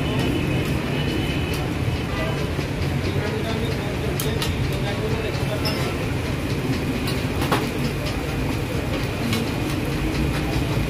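Metal spatulas clicking and scraping on a large flat steel griddle while egg is flipped and folded, with a few sharp clinks, over a steady low rumble.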